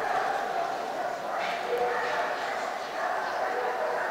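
Indoor show-hall crowd murmur, with a dog barking.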